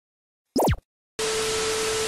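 Intro sound effects: a short falling electronic glide, then after a brief silence a steady TV-static hiss with a faint steady tone in it.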